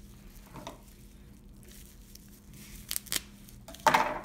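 Plastic bubble wrap crinkling as a small wrapped packet is handled and unwrapped, with a few sharp crackles near the end.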